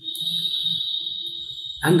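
A steady high-pitched tone that comes in suddenly and holds at one pitch for nearly two seconds.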